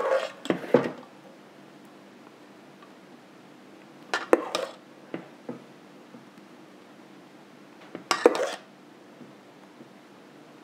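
A metal spoon clinking and scraping against a stainless steel mixing bowl while scooping thick cheesecake batter, in three short clusters: at the start, about four seconds in and about eight seconds in.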